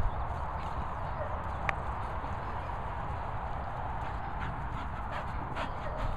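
A dog panting close by as it moves about on grass, over a low rumble of wind on the microphone, with a few light clicks.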